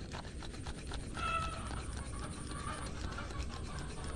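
Plastic clicking and short high squeaks as the orange PVC pipe of a homemade air gun is gripped and twisted in the hands: a quick run of clicks in the first second, then a few brief squeaks.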